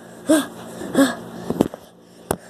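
A person's voice making two short wordless sounds, like grunts or breathy exclamations, about a second apart, followed by a couple of sharp clicks from the camera being handled.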